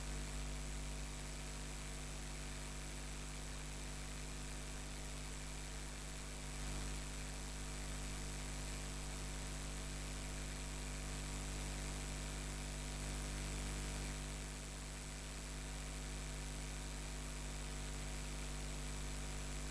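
Steady electrical mains hum with hiss: background noise of the recording, with no other sound.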